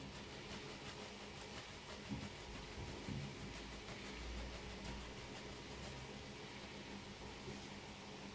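Parmesan being grated on a flat stainless-steel hand grater: faint, rapid, even scraping strokes.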